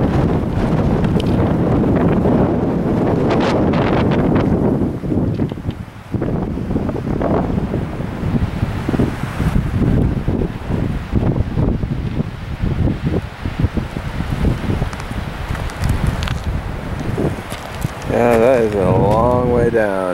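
Wind buffeting the microphone in gusts, easing briefly about six seconds in. Near the end a person's voice wavers up and down in pitch for about two seconds.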